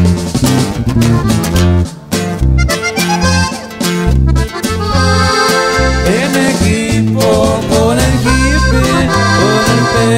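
Instrumental break in a norteño corrido: an accordion plays the melody, with quick runs, over a bass line that steps from note to note and strummed guitar-type strings.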